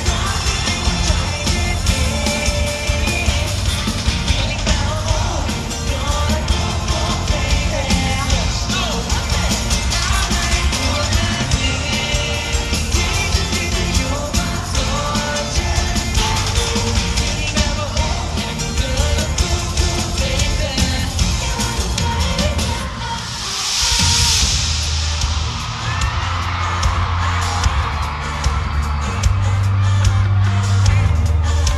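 Live pop song from a boy band, voices singing over a backing track with a heavy bass beat. About 23 seconds in, the music drops out briefly and a burst of crowd screaming rises. The heavy beat comes back near the end.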